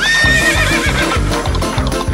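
A recorded horse whinny, about a second long: it leaps up at once, holds briefly, then wavers downward and fades. It plays over upbeat background music with a steady beat.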